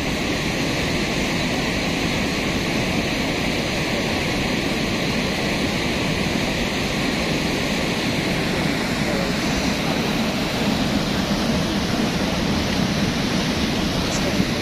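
A cold lahar, a volcanic mudflow of water, sand and rock, rushing by as a steady, unbroken wash of moving water.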